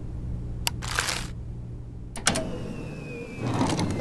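Cartoon computer sound effects over a low steady hum: sharp clicks and a short swoosh about a second in as an email is dragged on screen, then another click with a thin falling whistle. A louder, busier clatter starts near the end.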